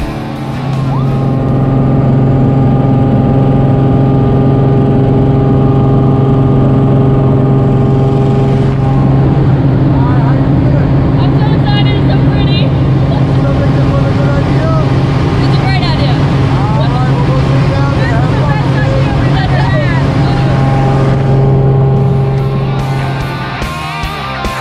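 Single-engine jump plane's piston engine and propeller heard from inside the cabin. It drones steadily at high power through the takeoff and climb, swelling over the first two seconds and then holding level.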